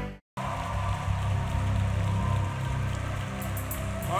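A congregation applauding and clapping steadily over low, sustained keyboard music. This follows a brief moment of silence after the intro music cuts off.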